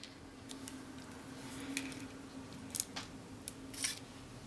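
Faint, scattered light clicks and taps, about half a dozen, of a small hand tool placing and pressing adhesive rhinestones onto a paper card, over a faint steady hum.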